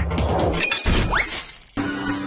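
Cartoon soundtrack music with a crashing sound effect over it, followed by a rising whistle-like slide. The music cuts out briefly near the end, and a new tune starts.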